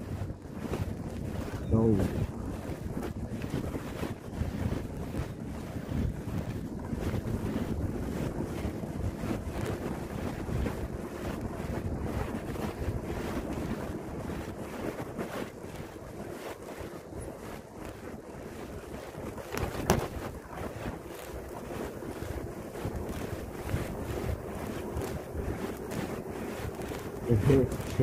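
Wind buffeting the microphone of a phone taped to the rider's chest as a mountain bike is ridden, with tyre rumble and frequent small knocks from the bike over the road and paving. A sharper knock comes about twenty seconds in.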